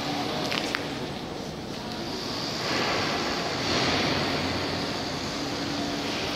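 Steady background noise of a building site inside a large, empty concrete hall, with a few light clicks about half a second in and a swell in level around the middle.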